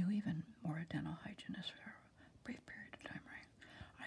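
A woman speaking softly in a near whisper, in short phrases with a brief pause in the middle.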